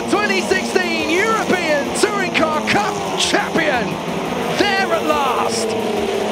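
Touring car engines running flat out down the finishing straight, with steady engine tones that slowly shift in pitch, under an excited race commentator's voice and background music.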